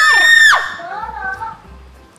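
A child's high-pitched scream lasting about half a second and cutting off sharply, followed by a fainter, wavering vocal sound.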